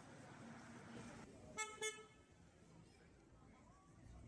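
A vehicle horn giving two short toots about a second and a half in, over the hum of street traffic.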